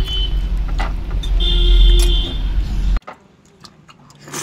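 A loud, steady low rumble with a brief high steady tone over it about halfway through. It cuts off abruptly at about three seconds, leaving only faint soft clicks.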